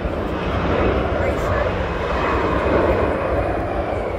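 Fixed-wing aircraft passing overhead: a steady engine noise with a deep rumble that swells twice, and a faint high whine in the second half.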